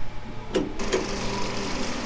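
Film projector running: a click, then a steady mechanical whir with a low hum.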